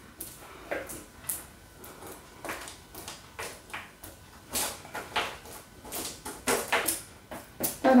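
Two metal forks tapping and scraping as they pull apart sticky caramelized almonds on parchment paper: a run of irregular light clicks and short scrapes.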